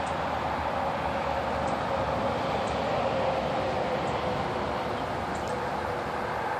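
Steady outdoor background noise, an even rumble and hiss with a faint constant hum, and a few very faint short high ticks.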